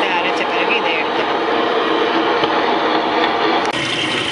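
Wet grinder running steadily as it grinds soaked urad dal into batter: a loud, unbroken machine noise with voices audible over it.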